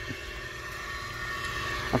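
Steady background rumble and hiss with faint steady hum tones, in a pause between a man's spoken phrases; his voice comes back right at the end.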